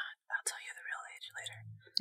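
A person whispering a few words.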